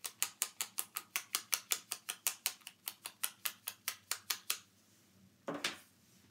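A small ink pad dabbed rapidly against the edge of a die-cut cardstock leaf to ink it red, making a fast, even run of sharp taps, about five or six a second, for about four and a half seconds. A single brief rustle follows near the end.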